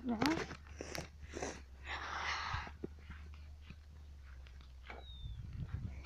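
Faint rustling and small knocks from a bicycle being ridden over grass with a phone held in hand, with a short rush of noise about two seconds in, over a steady low rumble.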